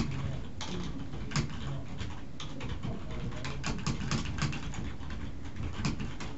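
Typing on a computer keyboard: a quick, irregular run of keystroke clicks as a sentence is typed out.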